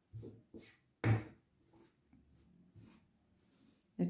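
Faint handling noises: a few soft knocks and rubs, the loudest about a second in, as hands work yarn fringe into a crocheted scarf with a crochet hook on a cloth-covered table.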